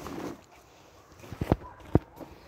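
A few short, sharp knocks: two close together about one and a half seconds in and a louder one near the end, over a faint rustle.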